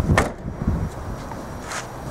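A single thump shortly after the start, then low rumbling wind and handling noise on the microphone.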